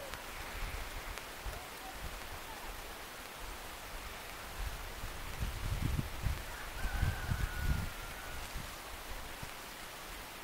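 Steady outdoor background hiss. A cluster of low rumbling bumps comes between about five and eight seconds in and is the loudest part, and a faint thin whistle is heard around seven seconds.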